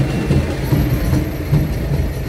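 Diesel engine of a New Holland tractor passing close by: a loud, low rumble.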